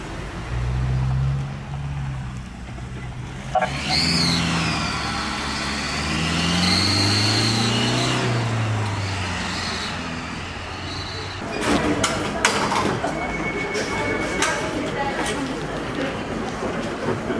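An ambulance van driving off, its engine note rising and falling as it pulls away, with a high whine gliding up and down above it. About eleven seconds in it gives way to clattering and knocking from a hospital stretcher being wheeled, with voices.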